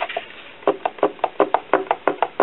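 A thick sawn aluminium block being rocked by hand on a steel plate, knocking rapidly about seven times a second as it tips from corner to corner: the piece is bent and does not sit flat.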